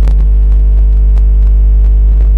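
Loud, steady electrical hum at mains frequency with a ladder of overtones, like a ground-loop hum on a sound-system feed. A sharp click comes right at the start and a few fainter clicks follow.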